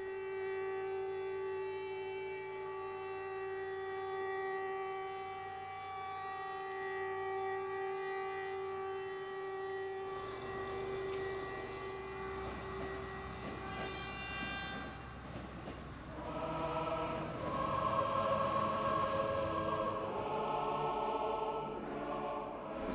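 A civil-defence siren holds one long steady note. About halfway through it gives way to the rumble of a passing train, and near the end a choir comes in singing.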